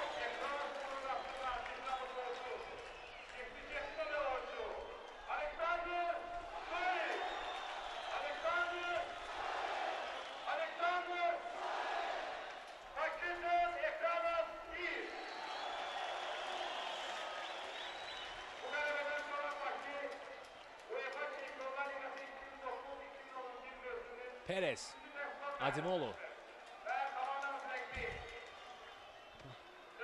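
A man's voice talking almost without pause, quieter and more broken near the end.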